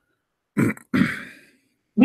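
A person clearing their throat: two short sounds close together, the second trailing off.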